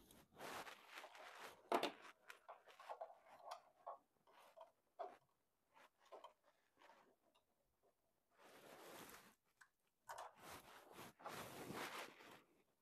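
Faint handling noises as a USB SD card reader on a cable is plugged into a TV's rear USB port: irregular rustling and light knocks, with one sharp click about two seconds in and longer stretches of rustling near the end.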